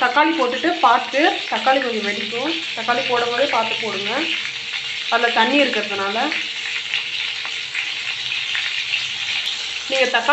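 Whole tomatoes frying in hot oil in a pan, a steady sizzle throughout. A person's voice is heard over it in three stretches during the first six seconds.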